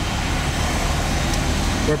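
Steady low rumble of a car's engine and tyres heard from inside the cabin, moving slowly in stop-and-go highway traffic.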